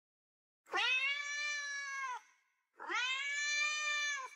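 Domestic cat meowing twice: two long, drawn-out meows, each sliding up at the start, held for about a second and a half, and dropping off at the end. The second begins about three seconds in.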